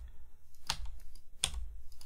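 Computer keyboard keystrokes: a few irregular sharp key clicks, two of them louder, about 0.7 and 1.5 seconds in, as digits are typed into a grid.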